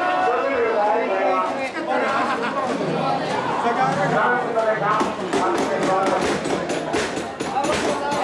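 A crowd of mikoshi bearers chanting and calling as they carry a portable shrine, many voices overlapping. From about five seconds in, a quick run of sharp clacks, about four a second, joins the voices.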